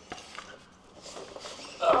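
Faint, light clicks and scrapes of multimeter test probes and leads being handled and set against wiring-connector pins. A man's voice starts near the end.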